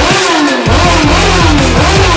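Loud rock music with a steady beat, with a racing motorcycle engine being revved, its pitch rising and falling.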